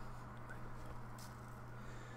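Faint background: a steady low electrical hum with light hiss, and no distinct sound event.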